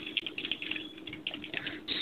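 Computer keyboard being typed on, a quick, irregular run of keystrokes.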